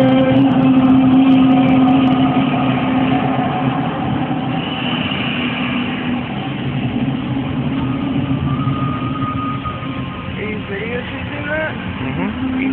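A steady low droning tone with overtones, over a background hubbub; the drone fades after about six seconds and voices come in near the end.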